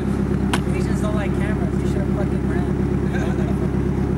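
A car engine idling steadily with a low, even pulsing, and a sharp click about half a second in. Brief laughter and voices sound over it.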